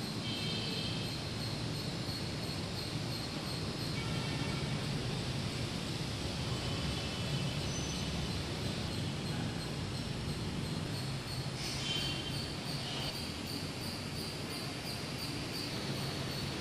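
Steady high-pitched chirping like crickets, pulsing evenly, over a low steady hum.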